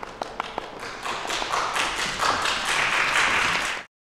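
Scattered sharp taps from a group of young children with small hand drums, quickly building into a dense, ragged patter of many hands. It cuts off abruptly near the end.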